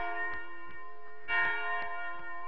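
Bell chime sound effect: ringing bell tones, struck afresh about a second and a third in and again near the end, over a steady ticking about three times a second.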